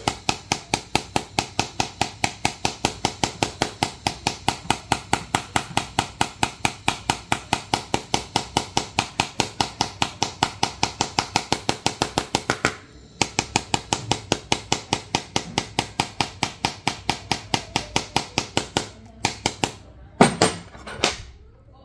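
Steel head of a ball-peen hammer tapping rapidly on a Samsung Galaxy S23 FE's glass screen, about four or five sharp taps a second. The taps pause briefly a little past halfway, then resume and stop near the end.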